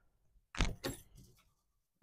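Two short plastic clicks about a third of a second apart as a felt-tip marker is picked up and its cap pulled off.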